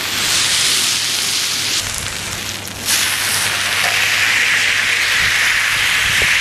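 Picanha beef roast sizzling loudly as it is seared on its side on a hot brasero-plancha. The sizzle dips briefly and surges again about three seconds in.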